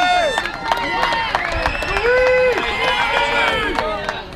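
Audience cheering and shouting for a graduate whose name was just called, several voices overlapping in long held calls.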